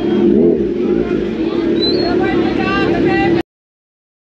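Kawasaki Z900 inline-four running at low revs with one short rev that rises and falls about half a second in, over the chatter of a crowd. The sound cuts off abruptly about three and a half seconds in.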